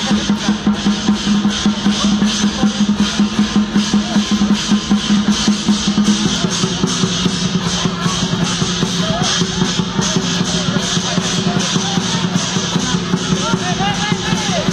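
Dragon-dance percussion: drum and cymbals beating a fast, steady rhythm of about three strokes a second, over a sustained low ringing that changes pitch about halfway through.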